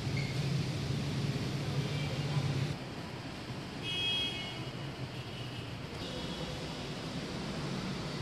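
Steady background of city traffic noise, with a low hum that drops away about three seconds in and a brief high-pitched tone about a second later.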